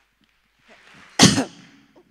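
A single short, loud burst of noise about a second in, over faint stage room noise.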